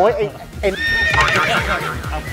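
A comic sound effect laid into the edit: a high, wavering, whinny-like call that starts about two-thirds of a second in and runs on, over a man's dizzy exclamation at the start.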